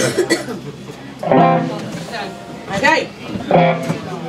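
Electric guitar through an amplifier: a sharp strum at the start, then a few loose notes and chords played between songs.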